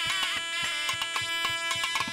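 Traditional South Indian temple music: a reed wind instrument plays a wavering melody over a steady drone, with a rapid run of ringing strikes throughout.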